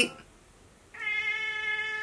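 A house cat meowing once: a single long, steady call that starts about a second in.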